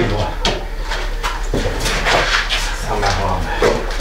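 Scattered knocks and light clatter as a chest freezer is handled and shifted, over a low steady hum.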